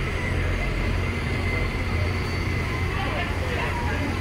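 Diesel-electric hybrid New Routemaster double-decker bus passing in city traffic, its engine giving a steady low rumble.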